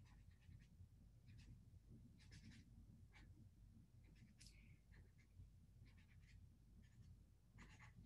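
Faint, intermittent scratching of a Zebra Mildliner highlighter tip stroking across paper as it colors in letters, a dozen or so short strokes at uneven intervals over near-silent room tone.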